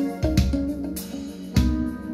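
Recorded music with guitar, bass and drums playing through an Acoustic Research AR228 bookshelf loudspeaker, with drum hits on a steady beat.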